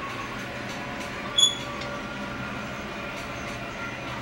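Steady gym background hum, with one short, high squeak about a second and a half in.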